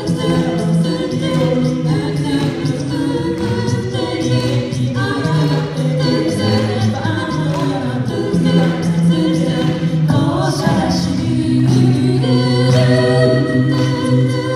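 A mixed six-voice a cappella group singing a pop song into handheld microphones over a PA, several voices in harmony over a steady sung bass line.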